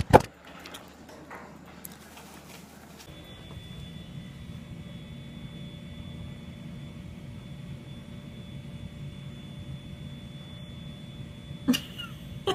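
A sharp knock right at the start, then steady low room hum with a faint high-pitched whine joining about three seconds in, and a short click near the end.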